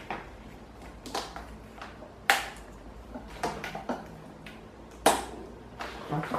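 Plastic front grille of a Britânia Mega Turbo 40 pedestal fan being pressed onto the rear grille by hand: light plastic clicks and rattles, with two sharper snaps about two seconds in and about five seconds in as its edge is seated.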